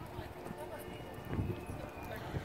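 A pony's hooves striking sand footing at a trot, with a stronger thump about one and a half seconds in.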